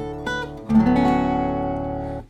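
Acoustic guitar in drop D tuning playing a D6 chord. A chord already ringing fades, then the chord is plucked again about two-thirds of a second in and left to ring.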